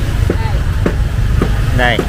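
A steady low rumble with brief, faint voices of people nearby.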